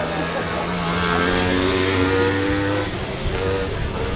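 Dirt-bike engine racing on a grass track, its pitch climbing steadily as it accelerates, then dropping back near the three-second mark.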